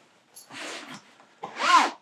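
A padded fabric speaker carry bag rustling as it is handled: a faint rub about half a second in, then a louder, brief rustle near the end.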